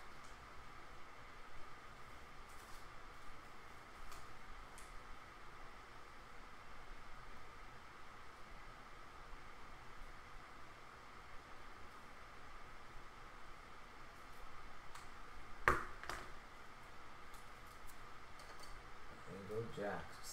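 Faint, steady room hum with scattered small clicks and rustles as trading cards, plastic card holders and a pen are handled on a desk. One sharper click comes about three-quarters of the way through.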